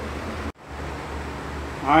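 Steady ventilation hiss with a low hum, broken by a brief dropout about half a second in; a man starts speaking near the end.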